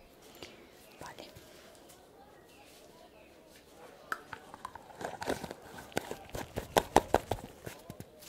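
Gloved hands handling a small glass jar with a metal screw lid. It is quiet at first, then from about halfway comes a quick run of sharp clicks and taps, densest in the last few seconds.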